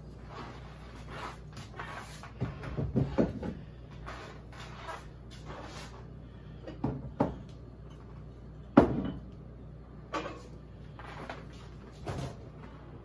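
Kitchen clatter: a series of knocks and thumps, a cluster about three seconds in and the loudest near nine seconds, over a steady low hum.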